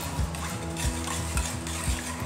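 Metal spoon stirring flaxseeds in water in a small steel bowl, clinking and scraping against the sides about every half second.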